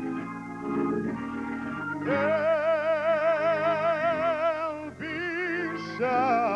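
Solo singer in an operatic style over held accompanying chords, holding one long high note with strong vibrato from about two seconds in, then starting a new phrase near the end.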